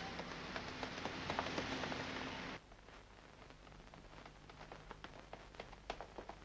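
City street noise: a steady hiss with scattered clicks and taps. About two and a half seconds in it cuts off abruptly to a much quieter background with faint taps.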